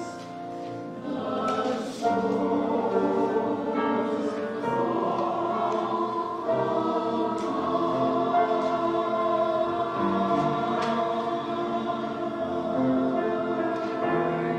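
Mixed church choir singing an anthem in sustained chords, softer at first and growing fuller about two seconds in.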